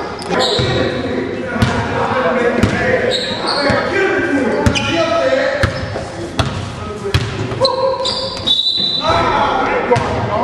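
Basketball bouncing in irregular thuds on a hardwood gym floor during a pickup game, with players' voices calling out over it in the large hall.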